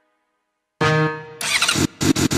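Silence, then under a second in a motorcycle engine sample starts and revs as the intro of a Brazilian funk track, breaking off briefly just before the beat comes in.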